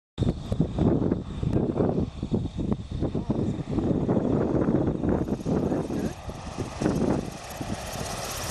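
Light single-engine propeller plane on its landing approach, its engine running throttled back as it descends and passes low over the grass strip, with an uneven, gusty rumble throughout.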